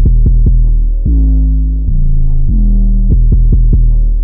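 Instrumental stretch of a hip hop beat: a loud, deep bass line of sustained notes that change pitch about every three-quarters of a second, each starting with a slight downward slide, with quick runs of short clicks over it.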